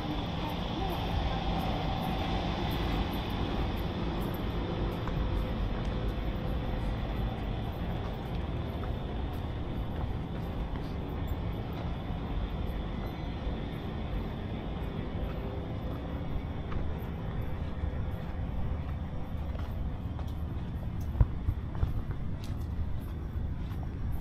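Steady outdoor city ambience: a low hum of distant traffic, with faint voices of passers-by near the start. A few sharp clicks come near the end.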